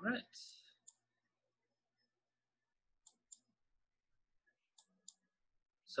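Faint computer mouse clicks: two pairs of quick, sharp clicks about a second and a half apart, heard while a slider in the app is being moved.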